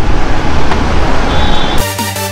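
Loud road traffic noise with a brief vehicle horn toot just past halfway; electronic music cuts in abruptly near the end.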